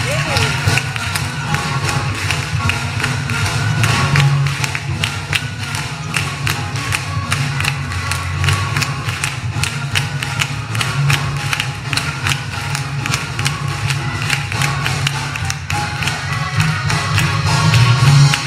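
Rhythmic hand clapping by a church congregation and clergy, keeping a steady beat over music with a strong low bass.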